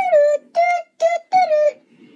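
A child's voice singing a run of short, high, wordless notes at a fairly level pitch, about two a second, the last one falling slightly.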